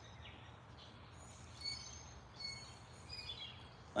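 Faint bird chirps: a few short, high calls in the second half, over a low steady outdoor background.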